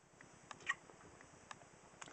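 A few faint clicks and light handling noise from a handheld camera being moved.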